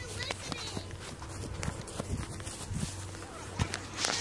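Footsteps and rustling knocks from a handheld phone camera being carried while walking, with faint voices in the background.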